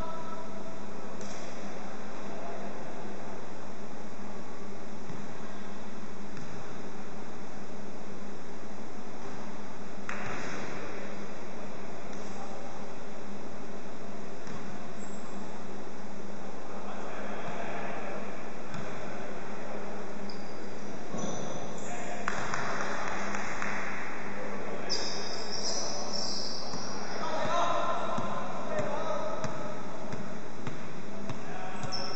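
Basketball bouncing on a wooden court and players' voices calling out, echoing in a large sports hall, over a steady hiss.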